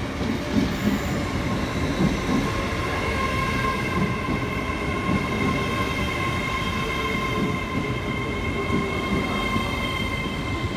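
A train running by: a continuous rail rumble with a few irregular knocks, and several steady high-pitched tones held over it.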